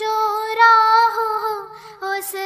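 A child singing a slow, held melody line of an Urdu prayer song, the voice sliding between sustained notes and trailing off near the end.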